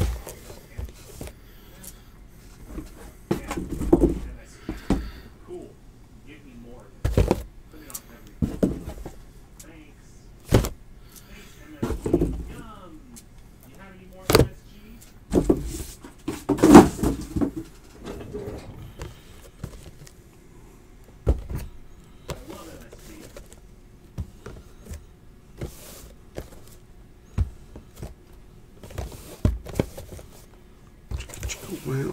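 Cardboard blaster boxes of trading cards being handled, shuffled and set down on a table: irregular knocks and thumps every second or few, with rustling and scraping in between.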